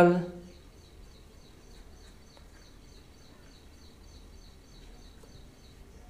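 Faint high-pitched bird chirping in the background, a short call repeated evenly about four times a second, fading out shortly before the end, over a low steady room hum.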